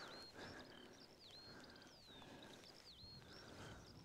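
Faint songbird singing: a run of high, short whistled notes, some sweeping up or down, with a quick trill about halfway through.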